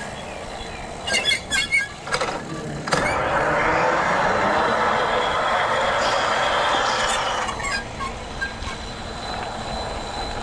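Mountain e-bike on the move: a quick run of squeaks about a second in, then a loud steady rush of wind and tyre noise that starts suddenly near three seconds and eases off after about seven.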